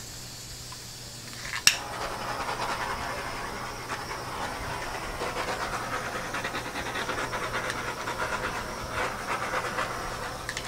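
Rhythmic swishing: a gloved hand rubbing and smearing wet acrylic paint back and forth across the canvas, with a sharp click about a second and a half in.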